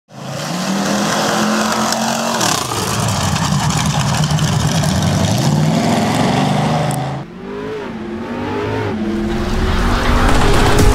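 Big-block V8 engine of a Hossfly bar-stool vehicle running and revving, its pitch rising and falling. About seven seconds in, the sound cuts suddenly to a quieter engine note with gliding pitch.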